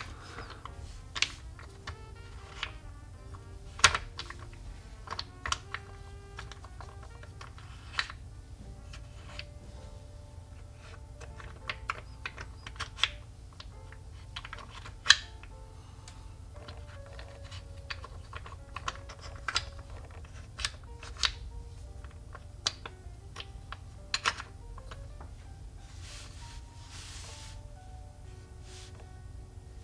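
Wooden puzzle blocks clicking and knocking as they are slid, lifted and set into the wooden castle tray. The clicks are sharp and irregular, about one a second, the loudest about 4 s and 15 s in.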